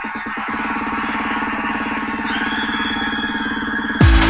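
Breakdown of a 1997 house track with the kick drum and bass dropped out: a fast, stuttering synth chord gives way about half a second in to a held, rapidly pulsing synth chord, with a thin high tone added a little past two seconds in. The beat comes back in right at the end.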